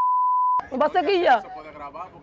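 A steady single-pitch censor bleep dubbed over the soundtrack, replacing all other sound and cutting off abruptly about half a second in.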